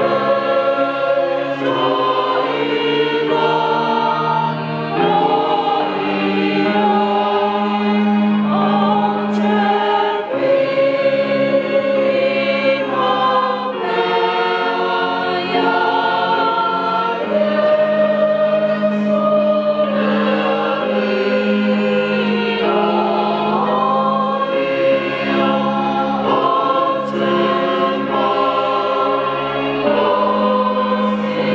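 A congregation of men and women singing a hymn together, many voices with long held notes and no break.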